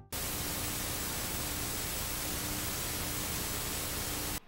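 Analog television static: a steady, even hiss with a faint low hum beneath it, starting abruptly.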